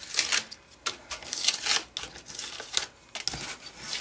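Cut cardstock pieces being peeled off a sticky Cricut cutting mat and handled, making irregular papery rustles, scrapes and soft peeling crackles.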